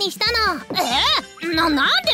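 Voice-acted dialogue between a woman and a boy over light background music.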